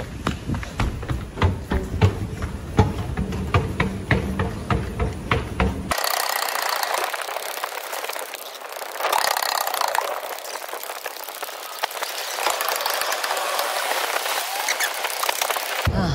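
Hurried footsteps on a hard station floor, two or three a second, over low rumble from handling and wind on a phone microphone. About six seconds in, this cuts abruptly to a steady hiss with no low end that lasts to the end.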